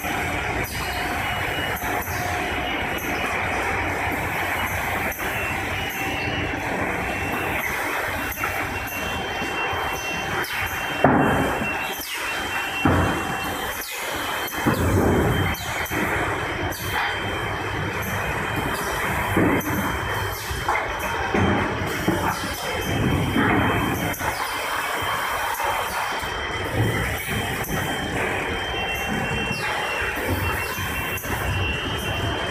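Automated case-packing line running: steady conveyor and drive-motor noise with irregular clatter and knocks, and a faint high pulsing tone that comes and goes.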